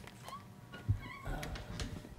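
A door being opened: latch clicks, a low thud about a second in, then a short wavering squeak as the door swings on its hinges.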